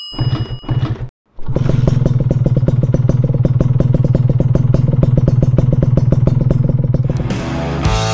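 Motorcycle engine sound in an intro sting: a few short blips, a brief cut to silence, then about six seconds of steady running with a rapid regular pulse that eases off near the end, with music.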